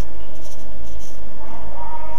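A steady low hum with faint, short scratchy rustles over it, in a pause between spoken sentences.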